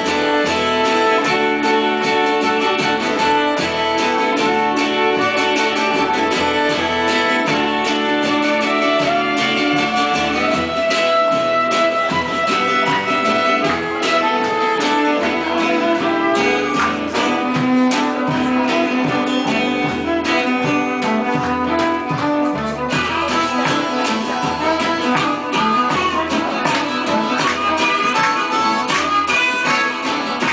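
Live acoustic blues trio playing an instrumental passage: fiddle and acoustic guitar over a walking upright double bass. The sound turns brighter and busier about two-thirds of the way through.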